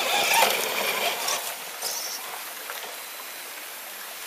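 Radio-controlled rock crawler with a 750-size brushed electric motor, its motor and gears whirring as it crawls up over a tree root, louder in the first second or so. A nearby stream rushes steadily underneath.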